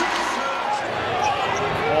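Crowd noise in a basketball arena during play, with the sounds of the game on the court.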